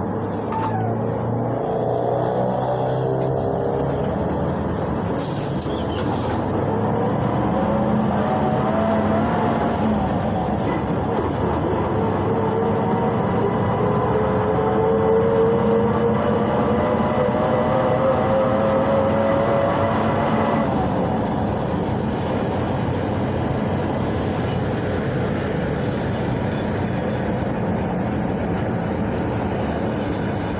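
Cabin sound of a PAZ-32054 bus under way, its ZMZ-5234 V8 petrol engine and drivetrain running: a low rumble with a whine that rises slowly in pitch as the bus gathers speed, then drops away about two-thirds of the way through. A short hiss comes about five seconds in.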